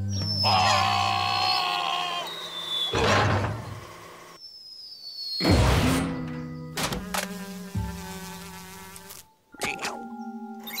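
Cartoon soundtrack of music and comic sound effects, with a wavering insect-like buzz in the first two seconds, two sudden swishes, and several sharp clicks near the end.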